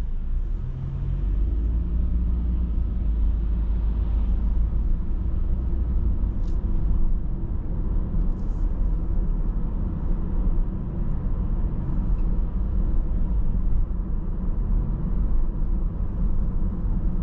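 A car driving along a suburban road, heard from inside the cabin: a steady low rumble of engine and tyre noise.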